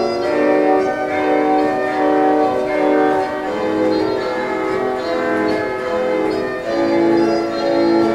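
Pipe organ playing baroque music in several voices, sustained notes moving about twice a second.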